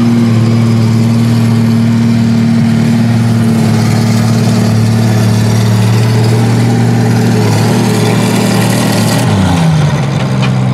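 International 460 tractor's six-cylinder engine running at a steady speed, its pitch dipping briefly near the end.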